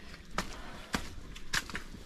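Footsteps climbing stone steps, a short knock about every half second.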